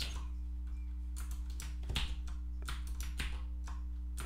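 Computer keyboard keystrokes: scattered, irregular key presses, with a low steady hum underneath.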